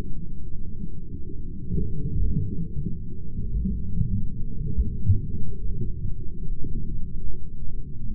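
Slowed-down audio under a slow-motion replay, pitched so far down that it becomes a deep, muffled rumble with irregular low thumps and nothing higher in pitch.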